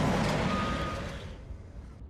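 A loud rushing noise that fades away over about a second and a half, with one short high beep partway through.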